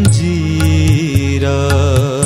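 Harmonium and tabla accompanying a male singer in a Gujarati light-classical (sugam sangeet) song. The voice holds long, wavering notes over steady harmonium chords and tabla strokes.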